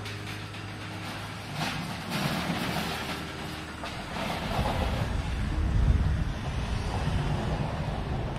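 A parked delivery lorry's diesel engine running at idle, with a steady low hum that grows into a louder rumble as it is approached and passed, loudest about six seconds in, with some metallic rattles.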